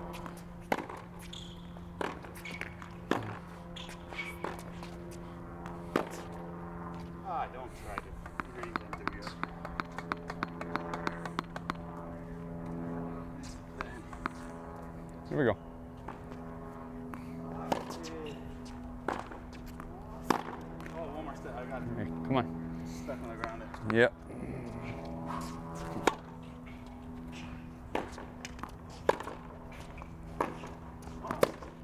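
Tennis rally on a hard court: racket strings striking the ball and the ball bouncing, with the odd shoe squeak on the court surface. Underneath runs a steady low hum.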